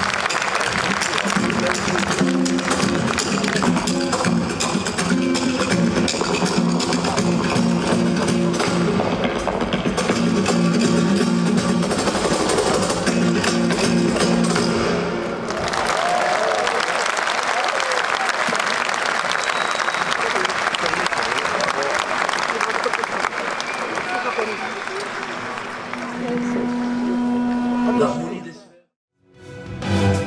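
Live flamenco music: acoustic guitar with held sung or sustained notes and sharp percussive strokes. About halfway through the music gives way to sustained audience applause.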